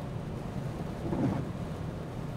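Steady road and wind noise inside the cabin of a Peugeot car cruising on a motorway at about 130 km/h.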